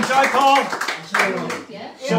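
Audience applauding with voices calling out over the clapping; the applause thins and fades away in the second half.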